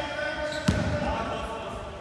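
A basketball strikes once with a sharp, deep thud about two-thirds of a second in, amid players' voices on the court.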